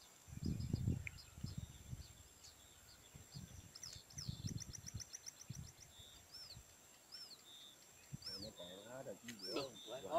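Small birds calling faintly: a quick trill of high chirps about four seconds in, then short, high, arched whistled calls repeated about once a second through the second half. Low rumbles come and go underneath, loudest in the first second.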